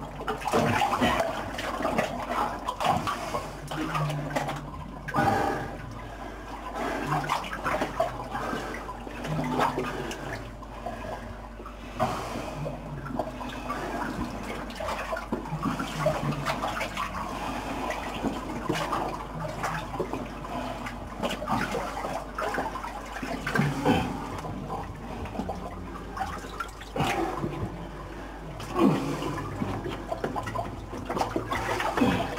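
Water sloshing and splashing unevenly as someone wades through the flooded tunnel's ochre-laden mine water, in irregular surges.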